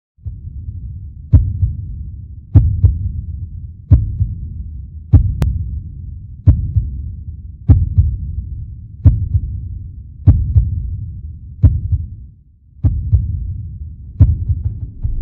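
Slow heartbeat sound effect for a trailer: deep thuds about every 1.3 seconds, some of them doubled, over a low rumble that drops out briefly near the end.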